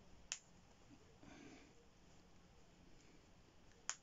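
Two sharp snaps, about three and a half seconds apart, of press-stud poppers being fastened on a baby's sleepsuit, with faint cloth rustling between them.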